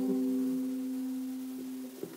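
Acoustic guitar's final strummed chord ringing out and slowly fading, a few low notes sustaining.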